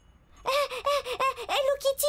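A cartoon character's high-pitched squeaky vocal sounds, a quick run of short rising-and-falling squeaks starting about half a second in.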